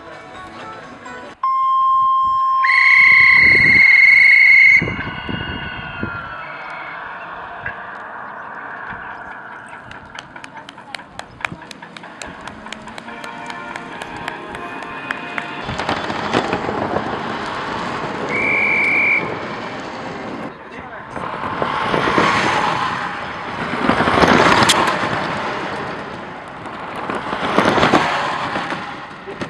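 Electronic signal beeps: a lower tone, then a longer, louder, higher one, and later a short high beep. In the second half the soft hiss of small electric economy-race cars swells and fades three times as they pass.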